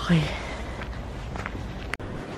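Slow, careful footsteps on icy, snow-crusted pavement: a few soft steps over a steady low background noise.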